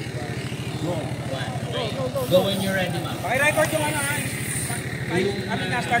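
A motorcycle engine idling with a steady, fast, even pulse, while people's voices call out over it a few times.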